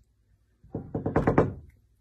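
A quick run of knocks on a door, about ten in just over a second, starting under a second in.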